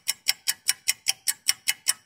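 Even, rapid ticking like a clock sound effect, about five sharp ticks a second.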